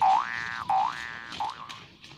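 Comic boing sound effect: a springy rising tone, repeated three times about two-thirds of a second apart, the last one short, then fading out.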